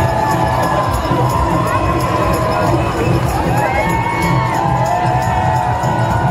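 A large crowd cheering and shouting, with high voices calling out over one another, and music playing underneath.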